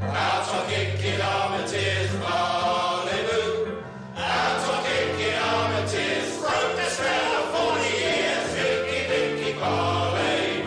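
Choral music: a choir singing sustained phrases, with a short break about four seconds in.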